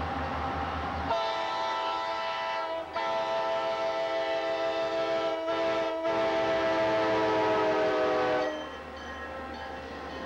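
Diesel freight locomotive's multi-chime air horn sounding long, long, short, long, the grade-crossing signal. The tones drop slightly in pitch as the locomotive passes, then the horn cuts off abruptly. The low drone of the approaching engine comes before the horn, and the freight cars rumble past after it.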